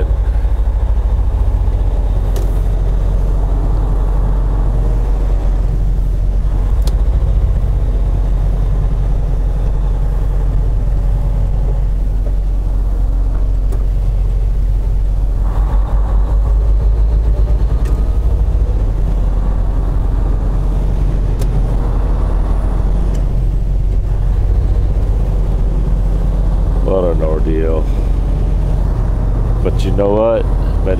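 Semi truck's diesel engine running steadily as the rig pulls away and gets under way onto the highway, heard from inside the cab as a steady low drone.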